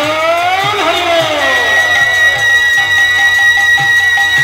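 Bengali kirtan music: electronic keyboard, harmonium and khol drum playing over a steady drum beat. A sliding melody falls in pitch over the first two seconds, then a single high note is held.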